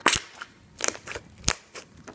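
Glossy slime being squeezed and pressed by hand, giving off sharp pops and clicks as air trapped in it bursts: three loud pops, at the start, just under a second in and about a second and a half in, with smaller clicks between.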